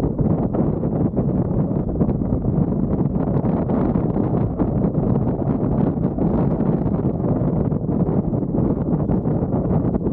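Airflow of a paraglider in flight buffeting the camera's microphone: steady, loud wind noise, heaviest in the low end.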